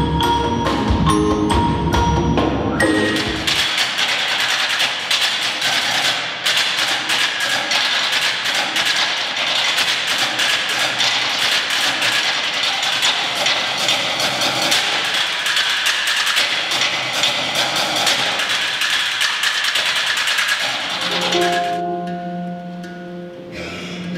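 Live percussion ensemble playing: a marimba melody over drums for the first few seconds, then a long stretch of dense, rapid high clicking with no bass, and pitched mallet notes returning near the end.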